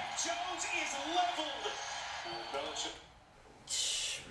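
Quieter speech from the football game broadcast playing in the background, then a short breathy hiss near the end.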